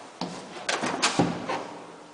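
Door and mesh gate of an old Flohrs elevator being handled: a quick series of knocks and clatters, loudest about a second in.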